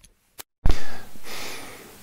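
A lapel microphone's jack being plugged into the DJI Osmo Pocket audio adapter. The sound cuts out completely for a moment, then a loud pop comes as the input switches to the external mic. A burst of hiss and rustle follows, swelling and then fading while the adapter adjusts its level.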